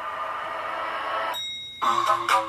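Music-video teaser soundtrack playing back: a steady synth drone, then about one and a half seconds in a short bell-like chime over a rush of hiss, like an elevator bell, just before the beat comes in.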